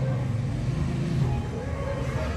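A steady low background hum, without distinct knocks or strokes.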